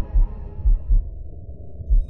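Deep, heartbeat-like pulse in the soundtrack: very low thumps in pairs, over a low hum. Fainter higher notes fade out about halfway through.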